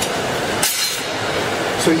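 Steady roar of a glassblowing studio's furnaces and fans, with one short clink of a tool a little over half a second in.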